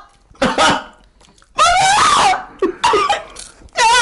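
Loud wordless cries and coughing in several short bursts, the longest in the middle with a wavering pitch: a person reacting in disgust to a mouthful of a bad food mixture.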